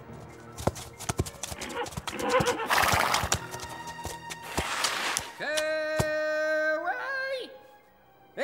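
Cartoon sound effects of horses' hooves arriving, a run of quick knocks, with a horse neighing, over background music that ends on a long held note.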